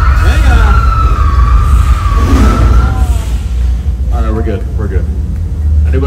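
A siren wailing over a heavy low rumble, its single tone sliding slowly down and fading out about halfway through. Voices follow near the end.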